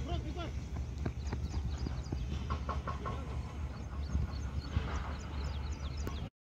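Open-air cricket-ground ambience: faint distant voices of players over a steady low rumble, with scattered light clicks and brief high chirps near the end.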